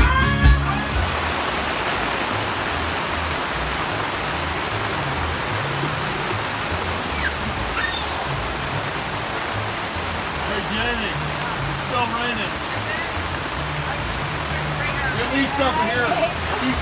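Heavy rain pouring down steadily in a downpour, an even rushing hiss. It starts about a second in, when a brief bit of live string-band music cuts off.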